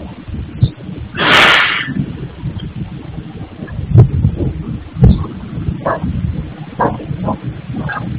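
Noise from a granite tile-cutting workshop: a low, uneven rumble with irregular knocks and clatters. A loud, short rush of noise comes about a second in, and two sharp knocks come around the middle.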